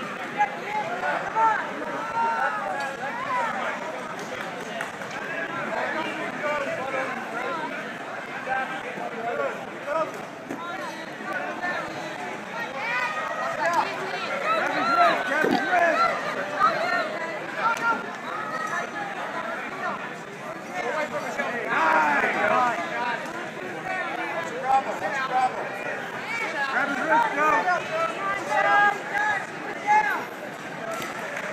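Many people talking and calling out at once in a large hall, a continuous babble of overlapping voices with no single clear speaker.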